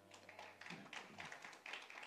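Near silence in a room, with faint scattered taps and clicks.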